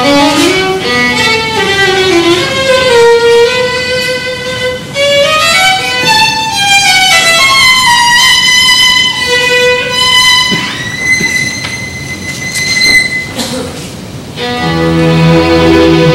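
Solo violin playing unaccompanied, with quick rising and falling runs, then a long held high note. Near the end a small ensemble comes in with lower accompanying notes.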